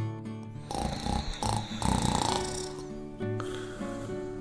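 A person snoring twice, each rattling snore lasting about a second, in a break in the guitar music.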